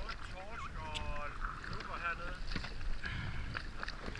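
Water lapping against an inflatable boat with wind on the microphone, under a steady low rumble; a voice makes brief wordless sounds about a second in and again around two seconds in.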